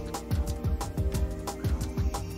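Background music with a steady beat of deep drum hits.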